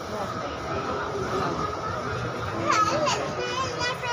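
Steady rumble inside a moving MTR train carriage under passengers' chatter, with a high wavering voice, likely a child's, in the last second or so.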